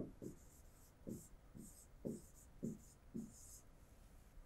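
Faint, short scratching strokes of a stylus writing on an interactive whiteboard screen, about two a second, as a word is handwritten.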